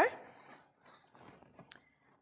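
Faint handling sounds as a soft lump of homemade playdough is picked up and squeezed in the hands, with one short sharp click near the end.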